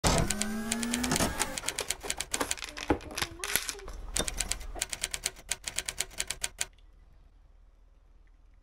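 A fast, uneven run of sharp clicks like typewriter keys, which stops abruptly near the end, after a short pitched sound at the very start.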